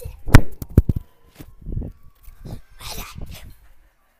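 Handling noise on a phone's microphone: several sharp knocks and thumps as the phone is grabbed and moved, the loudest about a third of a second in, then rubbing and a short hiss around three seconds.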